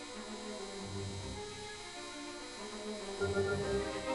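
Background music at a quiet passage, with sustained notes.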